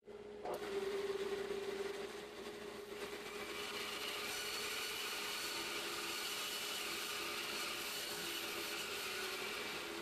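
Band saw slicing freehand through a large, wet green log: the blade's steady rasp in the wood over the saw's running hum, with the log fed slowly. The sound starts abruptly and is a little louder in its first two seconds, then holds steady.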